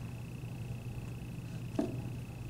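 Quiet room tone with a steady low hum and a faint high steady tone; near the end, one soft knock as a small toy figurine is dropped into a cardboard box.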